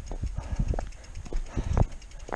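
Irregular low knocks and thumps, about six in two seconds with the strongest near the end, as the mountain bike and rider shift about on the dirt trail while stopped.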